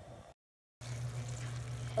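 Zucchini and chicken stew simmering in a stainless steel pan: a soft, steady liquid bubbling with a low steady hum under it. The sound drops out completely for about half a second near the start.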